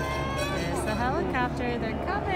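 A race announcer's voice over a public-address loudspeaker, with some drawn-out sweeping tones about halfway through, and faint music underneath.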